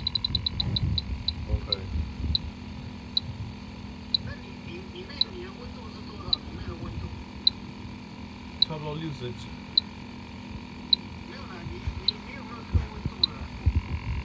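Bacharach H-10 Pro electronic refrigerant leak detector beeping: short high beeps that slow from a rapid run at the start to a steady one a second. The slow beep rate means the probe is picking up no refrigerant at the valves it is passing over.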